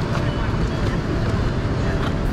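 City street ambience: a steady low rumble of traffic with people's voices mixed in.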